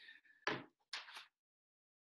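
A sheet of paper being handled and lowered: two short rustles about half a second apart.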